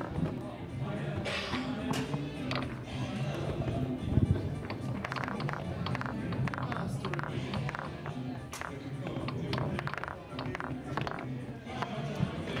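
Foosball in fast play: a busy run of sharp clacks and knocks as the ball is struck by the rod men and rebounds off the table, thickest from about two seconds in. Background music and faint voices run underneath.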